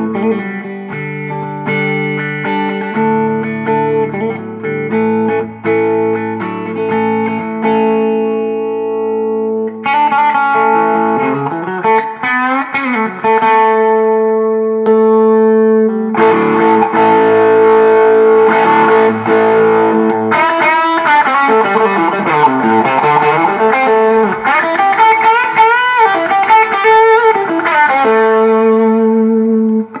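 A 1985 Gibson ES-335 with Shaw humbuckers, played through a 1965 Fender Deluxe Reverb: held chords ring for the first several seconds, then picked single-note lines with string bends and vibrato. The playing grows louder and busier from about halfway through.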